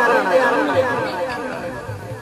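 Voices: a man's speaking voice tails off and fades into fainter background chatter.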